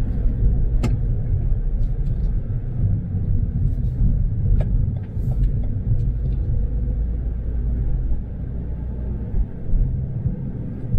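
Steady low rumble of a car driving, heard from inside the cabin: road and engine noise, with a few faint scattered clicks.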